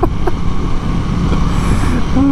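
KTM 890 Duke R's parallel-twin engine running at a steady cruise, mixed with wind rushing over the helmet microphone.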